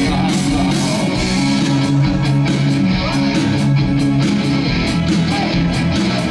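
Live rock band playing: a drum kit keeps a steady beat under electric guitars, bass and keyboards, with a male singer on the microphone.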